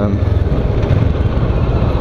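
Kawasaki Ninja 650R's parallel-twin engine running at a steady low speed while riding, under a steady rush of wind noise.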